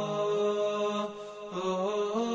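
Closing theme music: a slow chanted vocal line of long held notes that step from pitch to pitch, with a short break between phrases about a second in.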